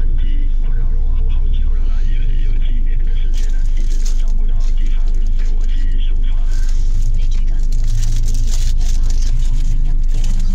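Car engine idling while stopped, heard inside the cabin as a steady low drone, with indistinct voices over it.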